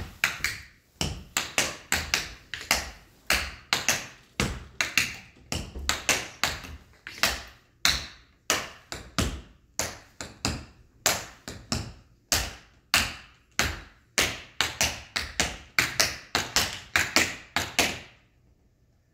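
Tap shoes striking a hardwood floor in a tap dance routine: quick, crisp taps in rhythmic groups, several a second, with no music.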